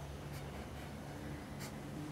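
Faint scratching of a fine-tipped pen on paper in short strokes as small triangles are drawn, over a low steady room hum.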